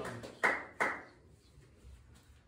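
Hand clapping: two sharp claps in the first second, the last of a steady run of claps at about three a second.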